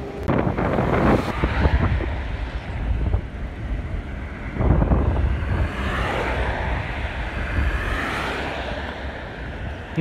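Road traffic passing close by on a narrow road: a car and heavy trucks drive past with a low rumble and tyre noise that swells about a second in and again around five seconds. Wind buffets the microphone.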